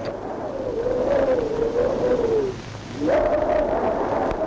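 A single sustained melodic line gliding gently up and down in pitch. It drops away about two and a half seconds in and comes back slightly higher half a second later.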